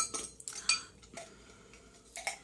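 A glass spice jar with a metal lid being opened and a cinnamon stick taken out: a few light clicks and clinks, the sharpest right at the start, trailing off after about a second.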